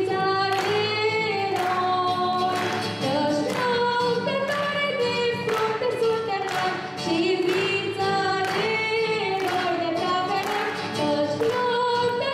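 A woman sings a Romanian song into a microphone, holding long notes that waver in pitch, with an acoustic guitar accompanying her.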